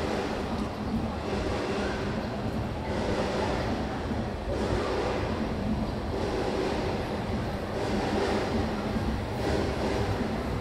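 A steady low mechanical rumble with a hum underneath, swelling slightly now and then.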